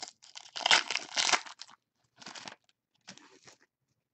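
Trading-card packaging crinkling and tearing as packs and cards are handled, in three short rough bursts, the first and loudest lasting about a second and a half.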